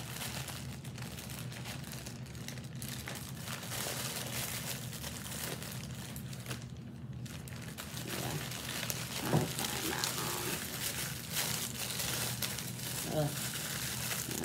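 Plastic bags crinkling and rustling as they are handled, with many small crackles that get busier and louder about halfway through.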